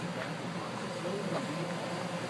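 Steady hum of the electric air blower that keeps an inflatable bounce house inflated, heard from inside the inflatable, with faint voices in the background.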